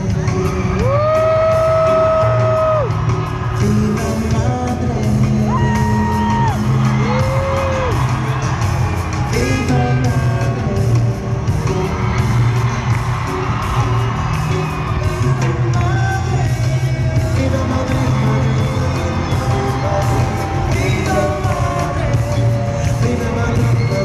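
Live pop band playing in a large arena: electric guitars and bass over a steady beat, with a male lead voice holding long sung notes that slide into and out of pitch, and occasional shouts and whoops.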